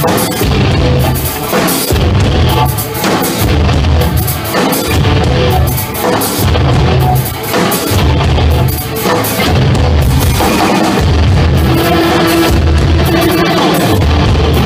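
Loud live rock band: a drum kit and electric guitar over a heavy low end that pulses about once a second.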